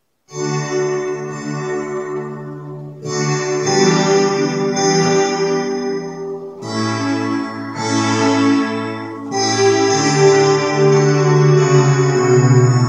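Electronic keyboard played by hand, slow held chords in an organ-like sustained voice, changing about every three seconds. The playing starts just after the beginning, out of silence.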